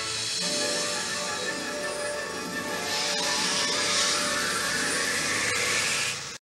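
Orchestral trailer music with a whooshing rush of noise laid over it, swelling from about halfway through and strongest around four seconds in.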